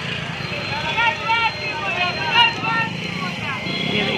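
Busy street-market ambience: a steady rumble of road traffic with people talking in the background.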